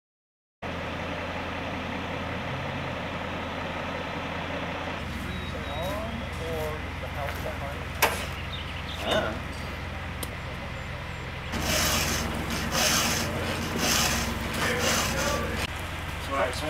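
A truck engine idling steadily, with tools clanking about and a few voices. From about eleven seconds in, short noisy bursts come roughly once a second.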